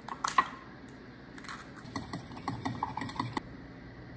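Light clicks and scrapes of a tiny spoon against a small ceramic bowl while stirring: a few sharp clicks at the start, then a run of small ticks from about a second and a half in until near the end.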